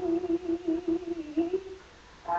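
A woman humming unaccompanied, holding one long low note with a slight waver, which stops shortly before the end.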